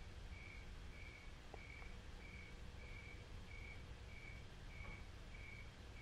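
Faint, evenly repeated short chirps at one high pitch, about one and a half a second, over a low steady hum.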